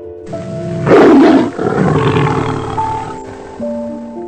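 White tiger roaring and snarling, loudest about a second in and trailing off by about three seconds, over background music with held notes.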